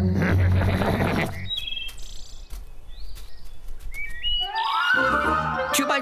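Cartoon soundtrack: a noisy sound effect for the first second and a half, then scattered short chirping tones and a quick stepped rising run, leading into music about four and a half seconds in.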